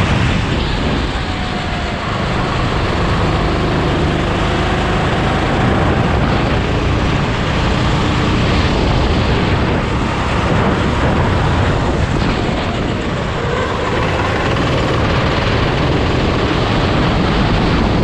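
Go-kart engine running at speed, heard from the driver's seat, its pitch rising and falling faintly through the corners, under a heavy rush of wind on the microphone.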